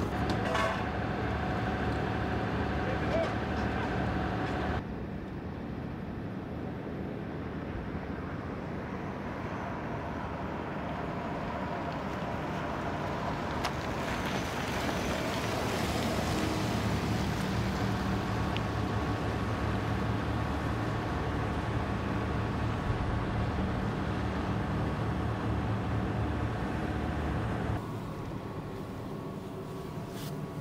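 Vehicle engines running: a ladder fire truck idling steadily at first, then a Ford F-150 pickup driving past, louder about halfway through.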